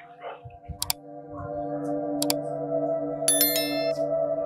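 Meditation music of sustained drone tones swelling up, with two sharp clicks about a second and two seconds in and a bright bell chime near the end: the sound effects of a like-and-subscribe button animation.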